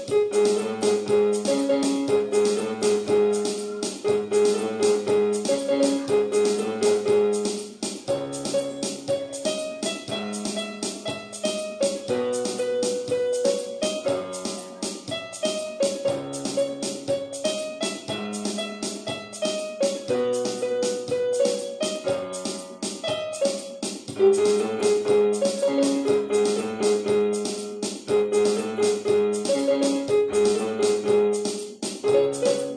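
Portable electronic keyboard played with both hands on a piano-like voice: a melody over steady lower chords and bass, the notes struck at an even, regular pace.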